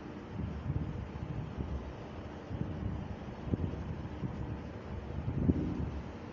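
Low, uneven rumbling background noise with a few soft thumps.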